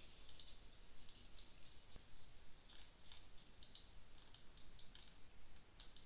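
Computer mouse clicking, a dozen or so faint clicks at uneven intervals, as objects are picked one after another on screen.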